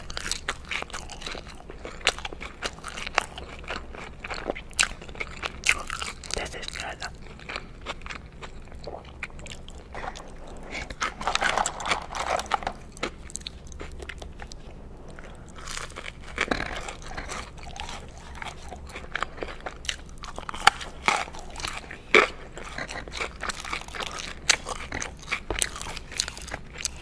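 Close-miked chewing and biting of McDonald's fast food, mostly French fries: many short crunches and mouth clicks, busiest from about eleven to thirteen seconds in.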